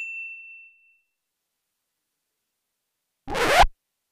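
A bright ding chime sound effect rings out and fades over the first second, followed by dead silence. Near the end comes a short, loud scratchy burst of noise lasting about half a second.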